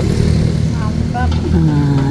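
A motor engine running close by as a low, steady drone, with voices over it.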